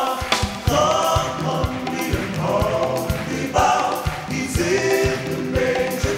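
Gospel choir singing in unison over a steady, repeating drum pattern.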